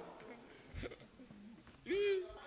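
Quiet room with a faint brief knock, then a man's short laughing vocal sound, rising in pitch, breaking out near the end.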